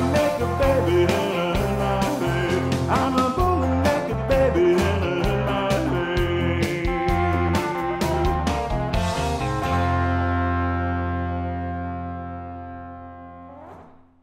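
Closing bars of a blues-rock song: electric guitar over bass and drums, with bending notes. About two-thirds of the way through the drums stop and a final chord is held, ringing and slowly fading until it cuts off at the end.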